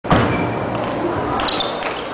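Table tennis rally: sharp clicks of the ball off the bats and table, one just after the start and a couple more near the end, over voices in a large hall.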